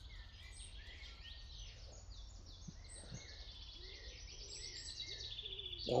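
Small songbirds singing: many overlapping high chirps and quick trills, growing busier in the second half, over a steady low rumble.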